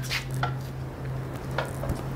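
A few light, sharp clicks over a steady low hum.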